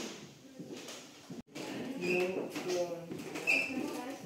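Mostly people talking in a room, the words not clear; the sound drops out sharply for a moment a little before halfway, and the talking is plainest in the second half.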